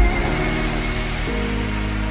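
Bass-boosted electronic music: a heavy bass hit right at the start, then held synth chords over deep sustained bass with a hissing noise layer on top. The chords change a little over a second in.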